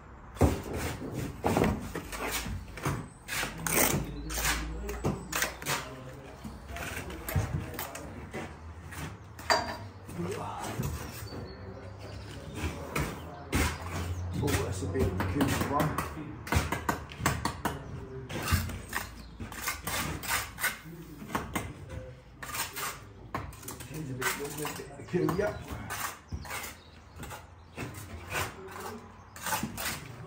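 Bricks being laid by hand: irregular taps, clinks and scrapes of a trowel against brick and mortar.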